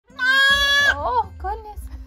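A goat kid bleating: one long, steady, high cry lasting under a second, followed by a short burst of voice.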